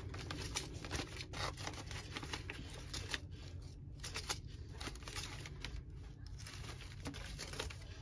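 Paper seed packets rustling and crinkling as hands leaf through a bundle of them, a run of irregular light rustles and small clicks.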